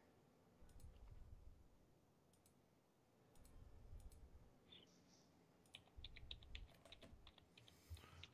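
Near silence with faint clicking of a computer mouse and keyboard, a quick run of clicks coming in the second half.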